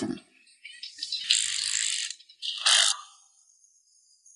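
Small toy claw machine working: its motor and plastic claw mechanism rattling for about a second, then a shorter, sharper rattle near three seconds in.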